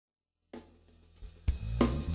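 A live band's drum kit starting a song: silence, then a first cymbal hit about half a second in, and from about a second and a half sharp strokes on snare, hi-hat and cymbals with low notes underneath.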